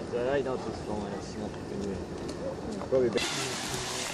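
Faint, indistinct voices of people talking in the background. A little after three seconds in, a steady hiss comes in.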